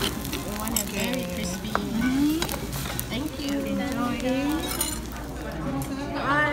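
A metal spoon stirring and scraping rice in a hot stone bowl of dolsot bibimbap, with the rice sizzling against the stone and the spoon clinking on the bowl. Voices can be heard in the background.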